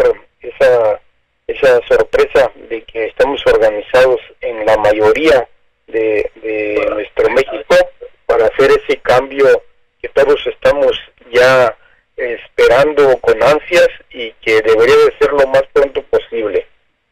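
A voice talking in short phrases with brief pauses, with a narrow sound like a telephone or radio line.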